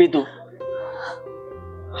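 Soft background film score of held notes between lines of dialogue, with an audible breath about a second in; a low sustained note enters near the end.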